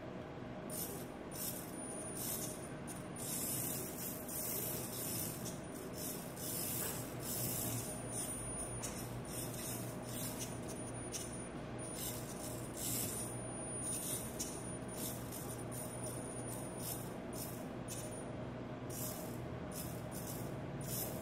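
Micro FPV RC car's tiny electric motor and gears whirring in short bursts as it is driven about in stop-start throttle blips, now and then with a thin high whine.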